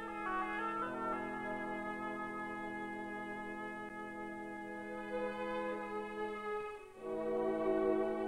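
Background orchestral music with long held chords, broken off briefly about seven seconds in before the chord comes back louder.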